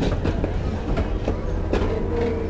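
A train rolling along the track: a steady low rumble with irregular clattering knocks from the wheels and cars, several a second.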